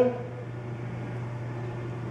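Steady low hum with a faint even hiss: room tone from a running fan or electrical hum, with no distinct events.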